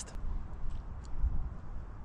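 Low, uneven wind noise buffeting the microphone, with a few faint clicks of chewing a bite of chocolate-twist pastry.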